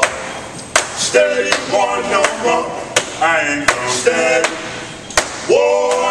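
Men's voices singing or vocalizing in short held phrases, unaccompanied, with about six sharp hand claps scattered through.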